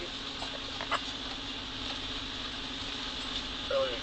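Four-wheel-drive vehicle's engine running with a steady drone while driving slowly along a rough dirt trail. A few light knocks or rattles come in the first second.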